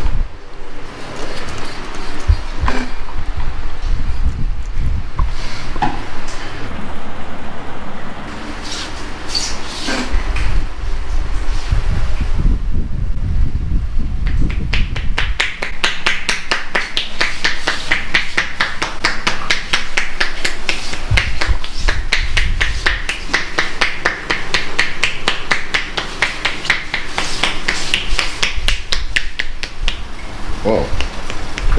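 Head massage: hands rubbing and working the scalp with irregular scuffs and low rumbles, then, from about halfway through, a rapid, even run of chopping strikes on the head with the palms pressed together, many a second.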